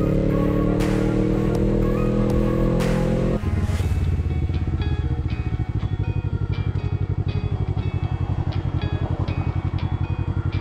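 Sport motorcycle engine heard from the rider's seat, its pitch rising steadily as it pulls away. A little over three seconds in the throttle closes and the pitch drops sharply. The engine then runs low and pulsing as the bike slows to a stop at the intersection, with light regular ticking over it.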